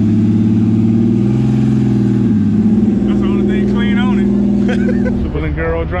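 Lamborghini Huracan's V10 engine idling steadily, left running so the front trunk could be opened. Its note shifts about two seconds in, and it drops away near the end.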